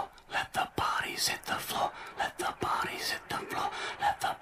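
Many young voices murmuring and talking at once, with scattered sharp slaps of hands meeting as two youth football teams pass each other in a handshake line.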